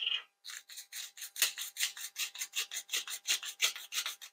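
Handheld spice grinder being twisted to grind dried herbs, a quick run of short rasping strokes about five a second.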